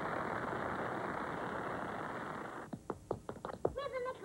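A hiss-like wash of noise fades slowly and stops about two and a half seconds in. A quick, irregular run of sharp clicks follows, and a high voice starts right at the end.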